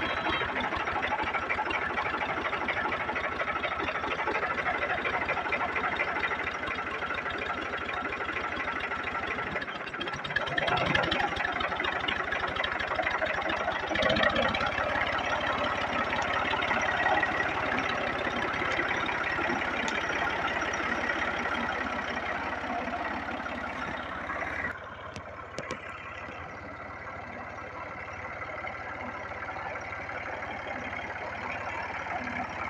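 New Holland 480 tractor's diesel engine running steadily with a fast, even firing beat as it drives. The sound drops abruptly about 25 seconds in and stays quieter after that.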